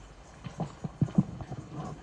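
A quick, irregular run of sharp clicks and knocks, about a dozen in a second and a half, the loudest about a second in.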